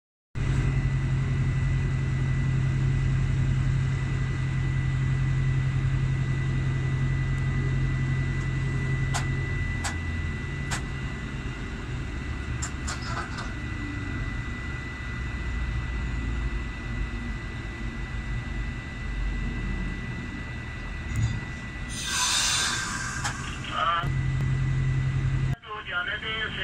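Diesel locomotive engine running on the parallel track with a low, steady drone that is loudest for the first ten seconds and then eases, with a few sharp clicks of wheels over rail joints. A short noisy burst comes near the end.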